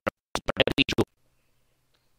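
A record-scratch sound effect: a quick run of about half a dozen short, stuttering scratch strokes lasting under a second, then silence.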